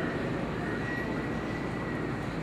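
Steady background rumble of a large indoor arena, with a thin, high, held whine that fades out near the end.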